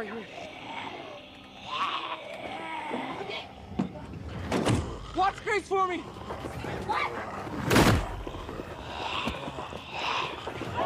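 Hurried, strained voices, with a short run of quick rising cries about five seconds in and one loud sudden slam about eight seconds in, from the door of an old truck.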